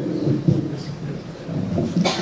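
Microphone handling noise: low rumbling and a couple of thumps in the first half second as a handheld microphone is gripped and adjusted on its stand.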